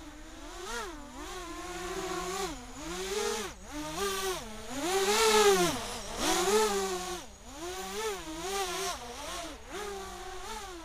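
Racing quadcopter's motors and propellers buzzing, the pitch swooping up and down constantly with the throttle. Loudest as it passes close overhead about five seconds in.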